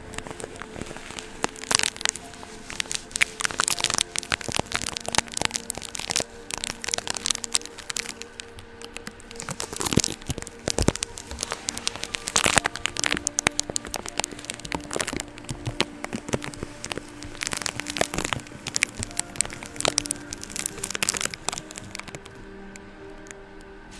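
Sticky tape being handled, pressed and peeled on a microphone's mesh grille, giving dense, irregular crackling and popping close to the mic, with louder bursts about two seconds in and again around ten and twelve seconds.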